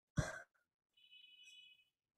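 A short sigh or breath out about a quarter second in, followed near the middle by a faint, brief high-pitched tone lasting about half a second.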